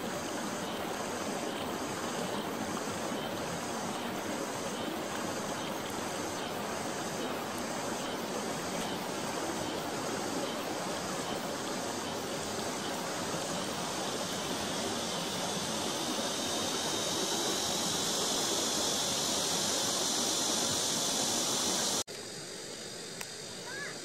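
Shallow mountain stream rushing over rocks in a riffle, a steady rushing noise, with a faint high ticking about twice a second in the first half. Near the end the rushing drops off suddenly to a quieter background.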